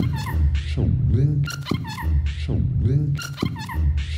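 Electronic music: swooping, pitch-bending tones that rise and fall, repeating in a pattern about every two seconds over a low pulsing bass.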